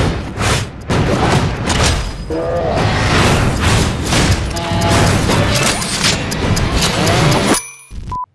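Trailer music with heavy booms and crashes from a fast action montage, dense and loud; it cuts off abruptly near the end.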